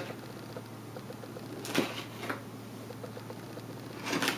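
Light handling of a doll's box and its packaging: faint rustling and small ticks, with a sharp click a little under two seconds in and a smaller one about half a second later, over a steady low hum.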